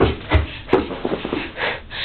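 A person shuffling and rustling close to the microphone, with a few low thumps near the start.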